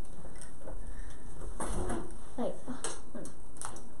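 Small hard plastic toy parts clicking and tapping as pieces of a miniature lightsaber are handled and fitted together: a few short, scattered clicks.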